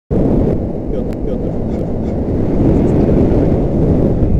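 Wind buffeting an action camera's microphone high on an exposed chimney top: a dense, steady low rumble.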